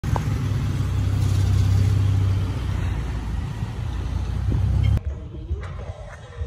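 Loud, steady low rumble with a hiss over it, cutting off abruptly about five seconds in.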